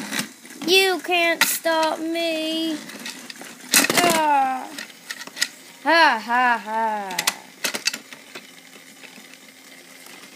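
A child's voice making wordless sound-effect cries while playing with toy trains: several held, wavering notes, then a falling cry about four seconds in, then more wavering cries about six seconds in. A few sharp clicks of plastic toy trains being handled.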